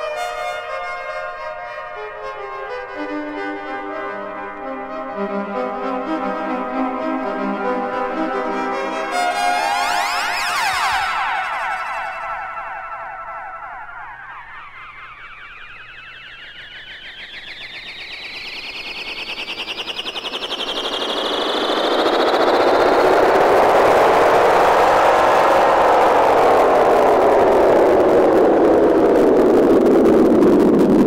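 Music with electronic sound effects: held brass-like chords, then a tone sweeping steadily upward, giving way about two-thirds through to a loud rushing noise that swells and then sinks in pitch.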